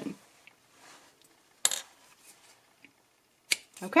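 Soft handling of bulky yarn, then two short sharp clicks, about a second and a half in and again near the end. These are small metal tools, a yarn needle and a pair of scissors, being set down and picked up on a wooden table.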